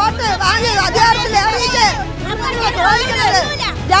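Several women's voices crying out and talking over one another, one of them weeping, with crowd chatter around them.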